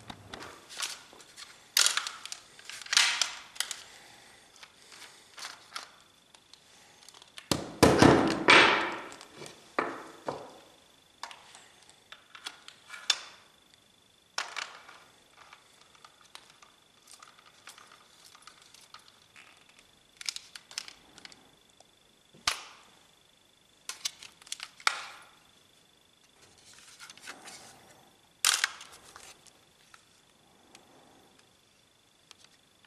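Sharp mechanical clicks and knocks from handling an Umarex T4E HDS68 break-open double-barrel CO2 paintball launcher, about a dozen separate sounds, with a longer, louder noise about eight seconds in.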